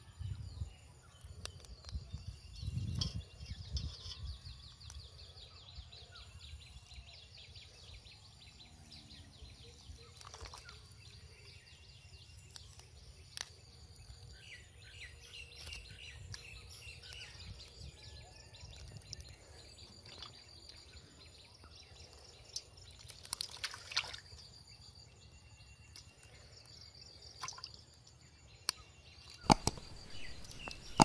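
Fish being worked free of a wet gill net over a steel bowl of water: water sloshing and dripping, with scattered clicks and knocks from the bowl and a louder splash cluster about two-thirds of the way through.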